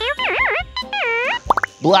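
A cartoon character's gibberish voice made of warbling, whistle-like electronic tones that swoop up and down, ending with a quick rising bloop about a second and a half in, over light children's background music.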